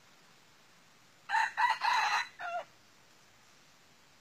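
Red junglefowl rooster crowing once, a short crow of about a second and a half broken into four quick parts, the last one lower and clipped short.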